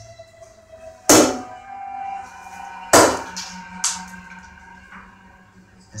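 Live improvised percussion: three hard strikes on a resonant object, the first about a second in, the second near three seconds, the third just under a second later. Each strike leaves a ringing of several held tones that slowly dies away.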